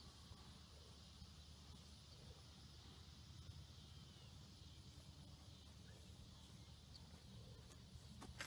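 Near silence: faint, steady outdoor background.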